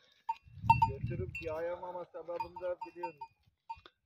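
Kangal sheep bleating: one long, wavering call starting about a second and a half in, broken briefly partway through, with a few faint short clinks around it.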